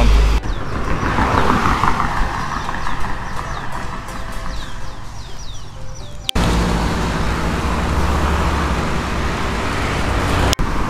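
A quieter passage of music with repeated high chirping notes, cut off sharply about six seconds in by steady roadside traffic noise with a low rumble of wind on the microphone.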